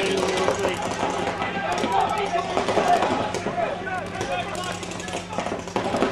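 Paintball markers firing in rapid strings of shots, under shouting voices.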